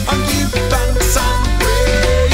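Reggae band playing an instrumental break: bass and drum kit keep a steady groove under guitars, with a lead melody of held notes that bend and slide.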